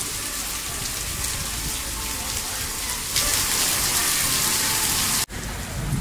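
Heavy rain pouring down onto stone paving, a steady hiss that grows louder about three seconds in and cuts out for an instant near the end.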